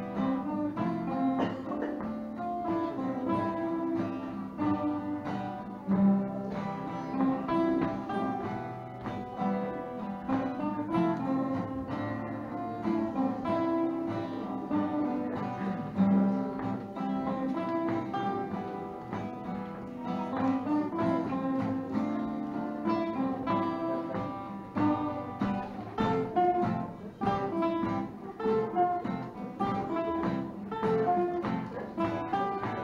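Three acoustic guitars playing an instrumental piece together, a steady flow of plucked notes and chords.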